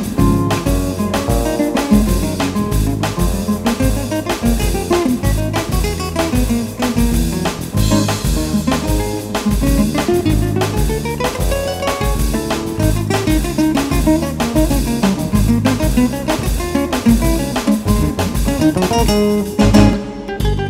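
Nylon-string classical guitar playing a fast, busy jazz-fusion line over electric bass and percussion keeping a steady beat.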